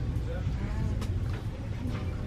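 Shop-floor background: a steady low hum with faint voices, and no clear sound from the puppy sniffing the candles.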